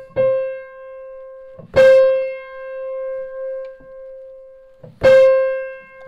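A note on a Bechstein grand piano, a C in the middle treble, struck three times and left to ring and fade each time while the string is eased with a tuning hammer. The string is being brought as pure as it will go, nearly free of beating.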